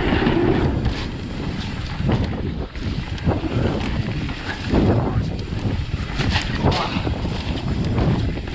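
Wind buffeting a helmet camera's microphone over the rumble of a mountain bike's tyres rolling fast down a trail, with scattered knocks and rattles from the bike over bumps.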